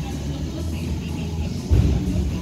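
Steady low rumble in a gym, with one heavy, dull thump near the end.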